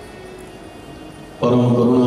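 Soft sustained music, then about one and a half seconds in a man's voice comes in loudly through a microphone, singing a long held note of a devotional chant.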